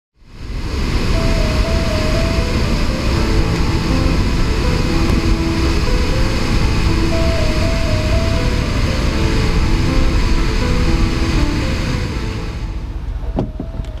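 Background music with a stepped melody over a loud, steady rushing wash of sound. It fades in at the start and falls away near the end.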